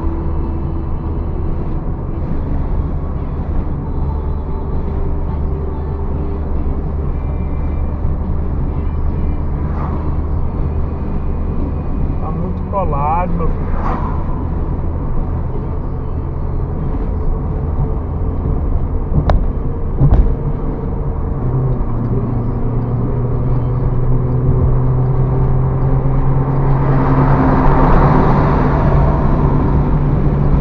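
Steady engine and road noise inside a moving car's cabin. About two-thirds of the way through, the engine note steps up and grows louder as the car accelerates, and a louder rush of noise builds near the end.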